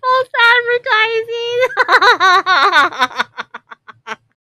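A woman laughing hard in high-pitched, drawn-out notes that waver in pitch, trailing off into short, breathy bursts near the end.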